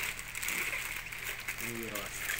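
Steady hum and hiss of factory machinery, with a voice starting near the end.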